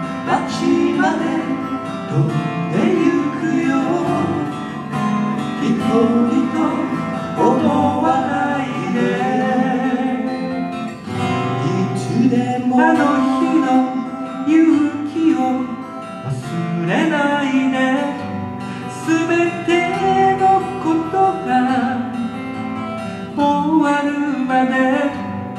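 Two acoustic guitars strummed and picked in a live folk duo performance, with a man singing over them.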